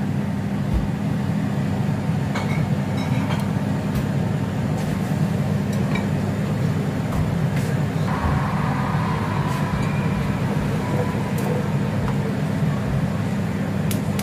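A steady low hum from a running kitchen appliance, with a few faint clicks and knocks; a faint higher tone joins it about halfway through.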